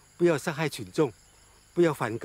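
A person's voice in short bursts, in two stretches about a second apart, over a faint steady high-pitched whine.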